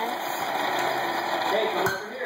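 Forge air blower running with a steady rush of air through the coal fire.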